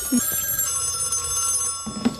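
Telephone bell ringing in one steady ring that stops near the end.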